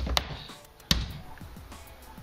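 Two sharp hammer blows on a sheet-metal patch panel, the second louder and about three quarters of a second after the first, each dying away quickly. The panel's rolled edge is being hammered tighter to match the body's curve.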